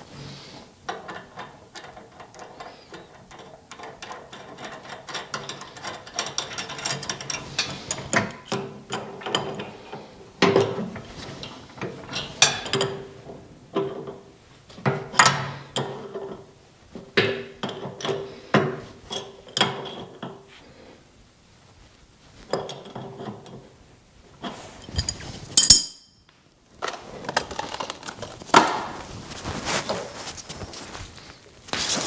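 Hand wrench working a hydraulic fitting on a snow plow's lift cylinder: a run of sharp, ringing metal clinks and scrapes as the fitting is turned and tightened, with a loud single clink near the end.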